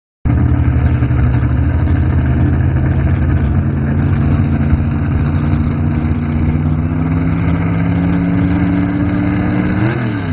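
Truck-pulling pickup's big-block V8 running hard under load against a weight-transfer sled. Its revs climb slowly over several seconds, then fall away sharply at the end.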